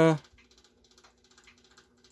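The color wheel's small electric motor hums steadily and quietly, with scattered faint irregular clicks. The motor is not yet fastened down, which the owner thinks is why it hums. A man's drawn-out "uh" trails off at the very start.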